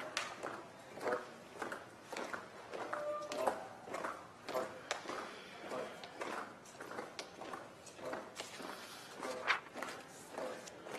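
Marching footsteps of a military color guard on a hard floor as the flags are carried in, heard as irregular knocks and heel strikes over faint shuffling.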